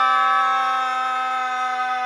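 A sustained electronic chord, several notes held perfectly steady and easing off slightly in level.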